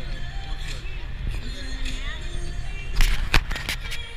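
Ballpark ambience: stadium PA music and nearby voices over a steady low rumble, with a few sharp knocks about three seconds in that are the loudest sounds.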